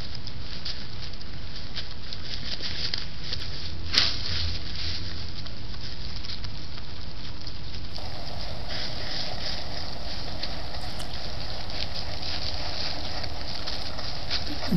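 Wild turkeys foraging in dry leaf litter: rapid crackling and rustling of feet and bills in the leaves over a steady hiss, with one sharper click about four seconds in.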